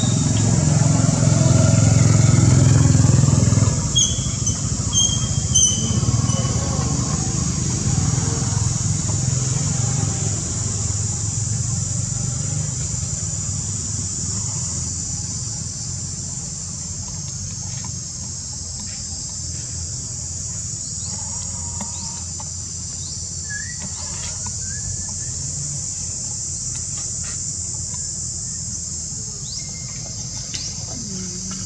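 A steady, high-pitched insect chorus runs throughout. A motor vehicle's low engine rumble is strongest for the first few seconds and fades away by about ten seconds in. A few short high chirps come around four to six seconds in.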